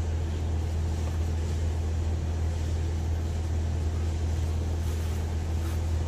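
A steady low motor hum, an engine or pump running without change.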